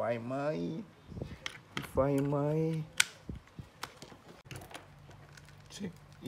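Sharp plastic clicks and taps from hands working the opened battery-powered toy elephant, its battery holder and multimeter test leads, with one loud click about halfway in.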